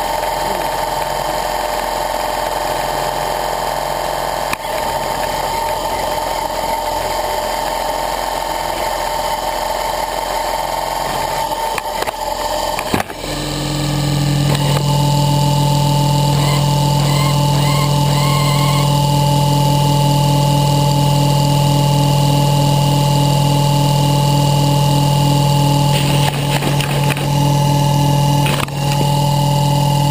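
Model helicopter motor and main rotor running steadily at close range. About 13 seconds in there is a click, and the sound becomes louder with a deeper steady hum as the rotor speed changes.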